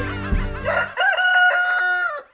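A single long rooster crow that rises, holds a steady pitch and breaks off at the end, over the last second of background music with a beat.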